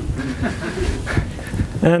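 Brief, breathy laughter in a lecture room right after a joke, then a man starts a drawn-out "and" near the end.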